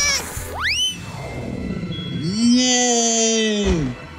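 Cartoon sound effects over background music. About half a second in comes a quick rising whistle-like swoop. From about two seconds in a longer pitched tone rises, holds and then falls away, with an airy whoosh over its middle.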